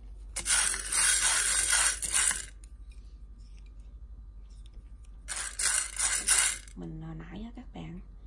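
Dry mung beans rattling and clattering around a frying pan as they are dry-roasted, in two bursts of about two seconds each, the second starting about five seconds in.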